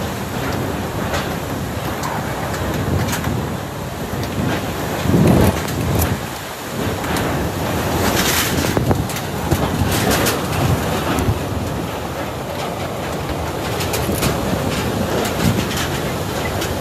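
Typhoon-force wind blowing in strong, surging gusts and buffeting the microphone, with the heaviest gust about five seconds in.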